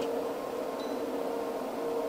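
Steady fan hum with a faint steady mid-pitched tone in it, even throughout.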